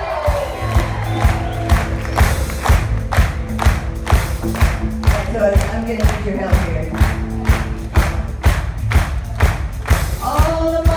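Live rock band playing an instrumental passage through a theatre PA: drum kit keeping a steady beat, with bass, electric guitars and keyboard chords.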